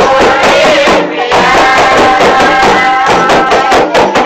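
Loud music with singing over a steady, rhythmic hand-percussion beat, dropping out briefly about a second in.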